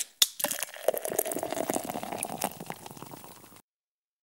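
Intro sound effect: a dense crackling with a faint steady tone beneath it, thinning out and fading until it stops about three and a half seconds in.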